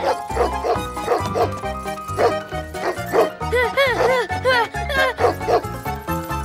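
Angry cartoon dog barking repeatedly in short, arching barks, with a run of them about halfway through, over background music with a pulsing beat.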